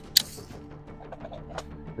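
Two sharp clicks in quick succession at the very start as a pistol is handled, over soft background music with held notes.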